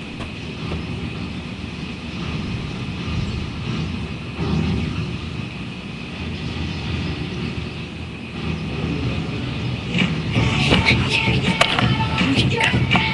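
Steady low rumble and hiss of room noise through a webcam microphone. About ten seconds in come knocks and clicks of the webcam being handled, and music begins.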